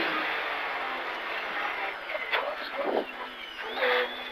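In-cabin sound of a Porsche 911 GT3 (997) rally car's flat-six engine and road noise, getting quieter over the first three seconds, with a short louder burst near the end.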